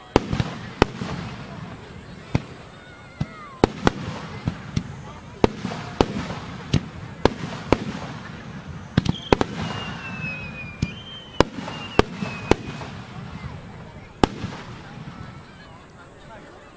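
Aerial fireworks shells bursting: an irregular run of about twenty sharp bangs, some in quick pairs, ending about fourteen seconds in.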